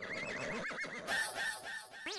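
Horse whinny sound effect: a high, quavering, warbling call with a hiss joining about a second in, used as a comic sting.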